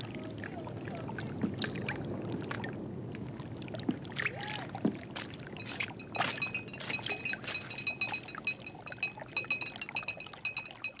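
Quiet room ambience with a low rumble, scattered knocks and clicks like footsteps on wooden floorboards, and a few short creaks. A faint high steady ringing comes in about six seconds in.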